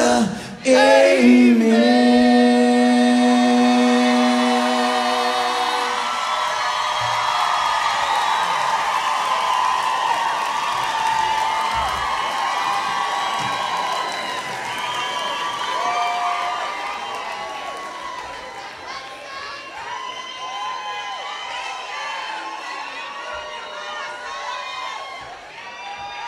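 A live rock band ends a song on a held final note that stops about six seconds in. A club audience then cheers, whoops and applauds, slowly dying down.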